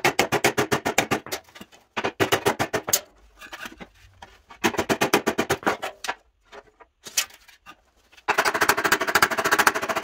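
Hand body hammer striking the sheet-steel edge of a 1948 GMC running board in quick runs of light blows, about ten a second, to straighten the dented metal. There are four runs, with a pause of light knocks and scraping a little past halfway, and the longest run comes near the end.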